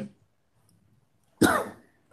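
A single cough about a second and a half in, after a near-silent pause.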